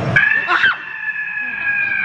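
A long, high shriek held at one steady pitch for about two and a half seconds, with a short falling cry just after it begins: a scare on a ghost train ride.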